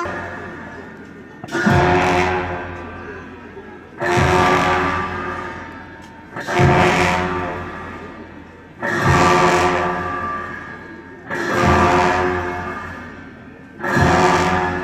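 Tibetan Buddhist ritual drum and cymbals accompanying a masked cham dance, struck together in a slow, even beat about every two and a half seconds, each crash ringing and slowly dying away.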